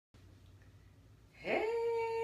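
A woman's voice in a drawn-out, sung greeting: it rises in pitch about one and a half seconds in and is then held on one steady note. Faint room tone before it.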